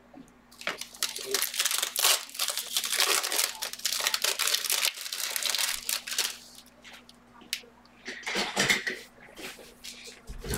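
Foil wrappers of Panini Select trading-card packs being torn open and crinkled: a dense crackling that lasts several seconds and then dies down, with a second short burst near the end.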